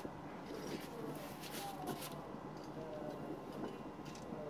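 Quiet, faint hiss and light crackle of wood pellets burning at the top of a homemade TLUD (top-lit updraft) pyrolysis stove, as the pellet bed catches and starts to turn to charcoal.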